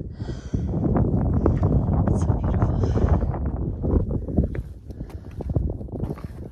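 Phone handling noise: a low rumble with many small knocks as the phone is moved and turned around, with wind on the microphone. It is loudest in the middle and eases off towards the end.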